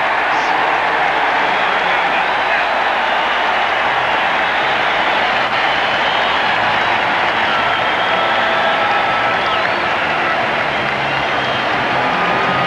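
Large stadium crowd cheering steadily for a touchdown.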